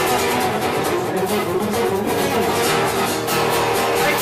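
Two acoustic guitars strummed together in a steady rhythm, an instrumental passage without singing.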